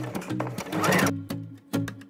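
Electric sewing machine running briefly, its motor whine rising and falling before it stops about a second in. Background music with short plucked notes plays throughout.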